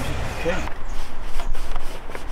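A cloth rubbing and wiping over the plastic engine cover of a Mercedes-Benz GLK in light scrubbing strokes, over a steady low hum.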